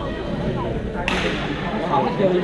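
Badminton racket smashing a shuttlecock about a second in: a sharp crack that rings on in the reverberant sports hall, over background chatter.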